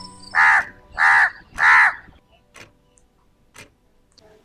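A bird calling three times in quick succession, the calls about half a second apart and loud, as soft music fades out at the start.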